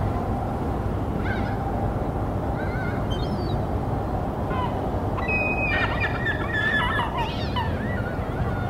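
Steady rush of flowing water, with geese honking at intervals over it and a burst of several overlapping honks about six to seven and a half seconds in.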